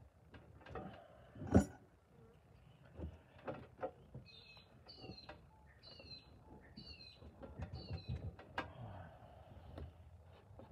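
Hands working clumps of casting sand in a steel tray: crumbly scraping and knocks, with one sharp knock about one and a half seconds in, the loudest. In the middle a bird calls five times, about a second apart.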